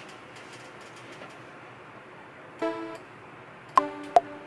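Low hiss with a few faint clicks, then a single short synth note about two and a half seconds in. Near the end, a synth lead melody with sharp, plucky note attacks starts playing back from the LMMS piano roll.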